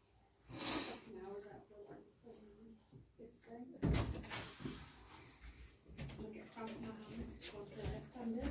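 Quiet murmured voices with a soft knock about four seconds in, a magnetic game stone being set down on the table.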